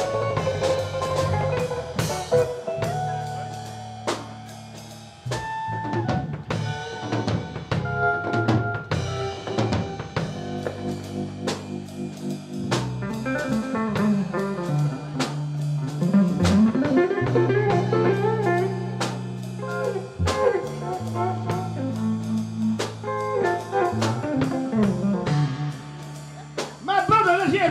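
Live blues band playing an instrumental passage: a Stratocaster-style electric guitar plays lead lines with bent notes over electric bass and a drum kit.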